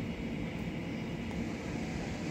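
Steady low rumble and hum of electric trains at a station platform, one standing close by and another approaching in the distance, with no sudden sounds.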